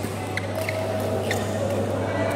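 Sports shoes squeaking on a badminton court floor: a few short, sharp chirps over the steady hum of a large hall.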